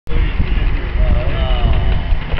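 Wind rumbling on the microphone, loud and uneven, with a faint voice in the background.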